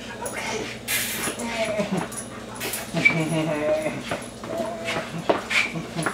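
A dog whining and whimpering in short pitched bursts during play with a toy, with several sharp clicks or taps in between.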